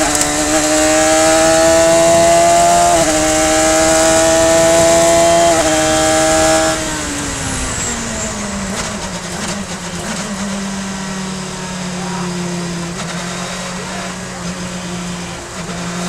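Radical SR3 race car's motorcycle-derived four-cylinder engine at full throttle, revs climbing with two quick upshifts about three and five and a half seconds in. Then the throttle closes, the engine note falls away, and it settles to a lower, steady part-throttle drone as the car slows, with wind rushing past the open cockpit.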